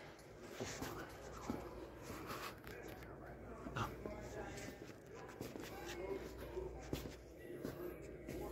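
Faint, indistinct voices in the background over a low steady hum, with a few scattered clicks and light rustling.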